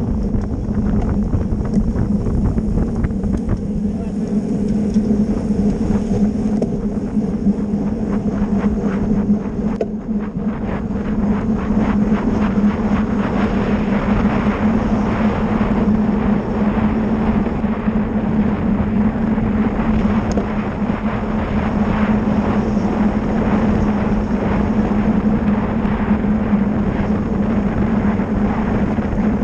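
Wind rushing over the microphone of a camera on a road bike ridden at speed, over a steady low hum. The rushing eases briefly about ten seconds in, then grows a little stronger.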